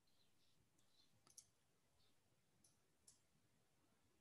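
Near silence: faint room tone with a handful of short, faint clicks, the clearest about a second and a half in.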